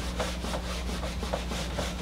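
Whiteboard eraser wiping marker off a whiteboard in quick back-and-forth scrubbing strokes, about three or four a second, over a steady low hum.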